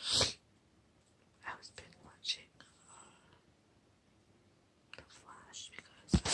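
A woman whispering close to the microphone in short, breathy bursts with quiet pauses between. The loudest is a sharp breath right at the start.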